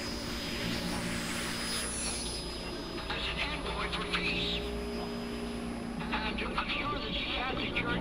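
Shortwave radio static fading in: a steady hiss with a thin high whistle and a low drone underneath, with fragments of garbled broadcast voice breaking through about three seconds in and again from about six seconds.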